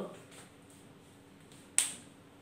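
A single sharp plastic click near the end, from a whiteboard marker being handled, capped or set down.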